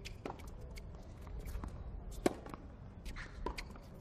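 Tennis ball struck by rackets in a point: one sharp pop about two seconds in, the loudest, and a fainter one about a second later, with lighter ticks and court ambience between.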